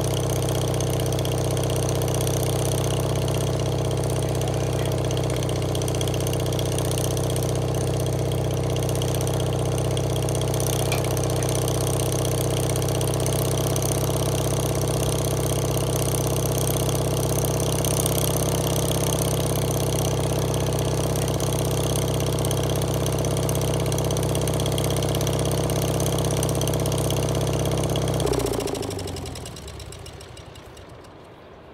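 The engine of a 1987 Wood-Mizer LT40 portable sawmill runs steadily at an even speed. About 28 seconds in it is shut off and winds down to a stop.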